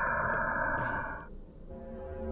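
Steady electronic drone of several stacked tones, presented as the sound of the planet Mercury, cutting off about a second and a half in. A lower, deeper drone starts near the end as the next planet, Venus, begins.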